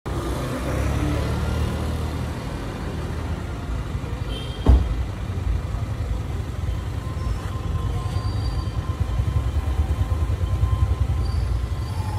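A car engine idling with a steady low rumble, and a single sharp thump about five seconds in.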